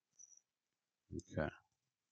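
Near silence broken by a faint, brief click just after the start, then a single spoken "okay" about a second in.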